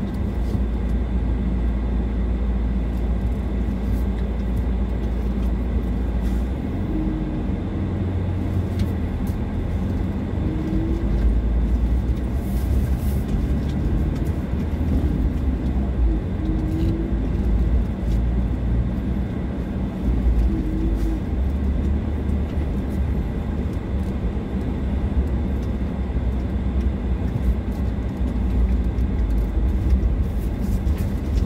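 Vehicle driving slowly on a dirt road, heard from inside the cabin: a steady low rumble of engine and tyres on the gravel, with a few faint ticks.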